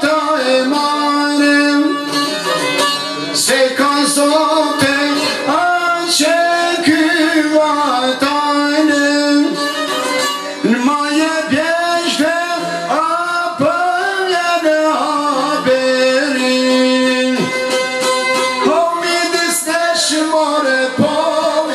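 Albanian folk song: a man sings with a strong voice over a plucked çifteli (two-stringed long-necked lute) and a second plucked long-necked lute, with no pause.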